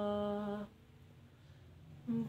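A man's singing voice holding one steady note that stops about two-thirds of a second in, followed by near silence.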